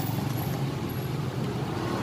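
Steady low rumble of road traffic, with no distinct events.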